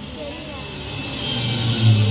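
City-traffic sound effect played over the show's loudspeakers: vehicle noise with a low rumble, swelling louder and peaking near the end.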